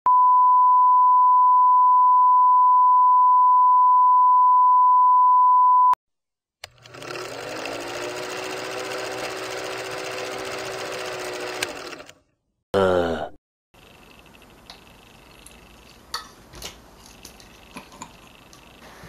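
A loud, steady test-tone beep over colour bars for about six seconds, cut off sharply. After a short gap comes a whirring film-projector rattle under a film countdown leader for about five seconds, then a brief falling swoop. Quiet room tone with a few small clicks follows.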